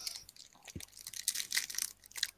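A quick run of soft, irregular clicks and crackles close to the microphone.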